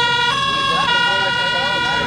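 A loud two-tone horn sounding in held notes, stepping to a second pitch and back again, with voices underneath.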